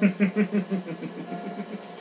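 A man laughing: a quick run of about six short, evenly spaced laughs a second that trails off within the first second.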